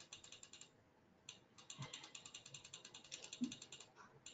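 Faint rapid clicking of a computer mouse's scroll wheel, about ten clicks a second, in a short run and then a longer run of about two seconds.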